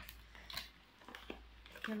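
Faint handling noises: a few light clicks and rustles as a small boxed item is handled, over a low room hum.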